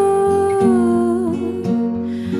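A woman's voice singing one long held note over two acoustic guitars, the note dipping slightly in pitch and ending a little over a second in while the guitars' picked notes carry on.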